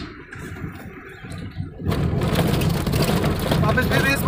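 Cabin noise of a Maruti 800 under way in third gear: small three-cylinder engine and tyre rumble. About two seconds in, the noise turns louder and harsher as the tyres run onto broken, patched road surface.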